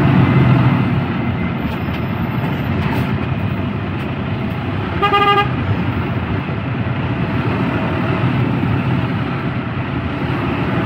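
Steady truck engine and road noise heard from inside the cab, with a single short horn toot about halfway through.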